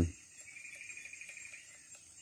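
Faint insect trill lasting about a second, over a steady faint high-pitched drone.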